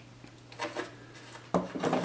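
Soldering iron being set down on a wooden desk: faint handling and rubbing, then a light knock about one and a half seconds in, over a steady low hum.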